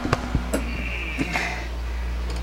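A few light knocks and clicks as the old 12-volt compressor and condenser unit, which is not running, is handled out of its locker, over a low steady rumble.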